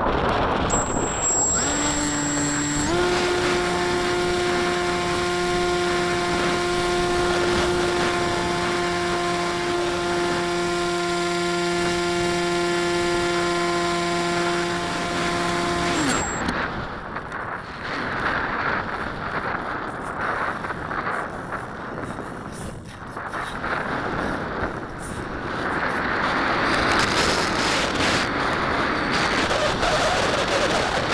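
Electric motor and propeller of a foam RC model plane, heard from its onboard camera: a steady whine that steps up slightly about two seconds in, runs for about fifteen seconds, then cuts off with a short falling spin-down. After that, only wind rushing over the airframe and microphone as the plane glides.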